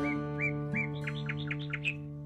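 A small bird chirping: three short call notes, then a quick run of about eight higher notes near the end, over a sustained acoustic guitar chord of background music ringing out.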